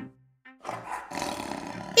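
A cartoon animal roar sound effect: after a brief silence, a rough, noisy roar swells up over about half a second and then holds steady.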